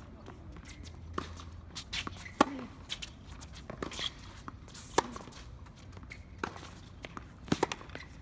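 Tennis rally on a hard court: sharp racket-on-ball strikes about every two and a half seconds, with ball bounces and player footsteps in between.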